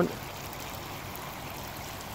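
Pond water spraying steadily in small jets from the holes of a perforated pipe and trickling onto filter wadding in a pond shower filter.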